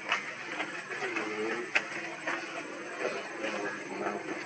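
Outdoor background with a steady high thin tone and scattered sharp clicks and crackles, with a faint voice-like call about a second in.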